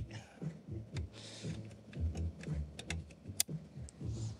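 Light clicks and small knocks from handling a network patch cable as it is plugged back into the switch, with a short rustle about a second in and one sharp click near the end.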